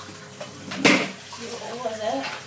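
A single sharp thump about a second in, the loudest sound here. A child's voice follows near the end.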